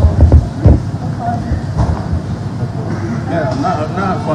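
Music with a heavy bass beat that stops just under a second in, followed by people talking among themselves.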